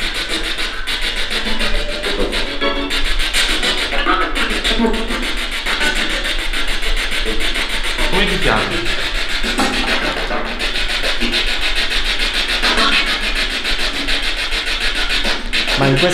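Spirit box radio scanner sweeping rapidly through stations: steady chopped static with brief snatches of voices and music.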